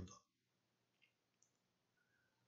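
Near silence: room tone in a pause between spoken verses, with two faint clicks about a second in.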